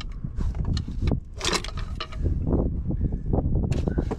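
Scattered clicks and rattles of parts and connectors being handled in a diesel truck engine bay, with a louder clatter about one and a half seconds in.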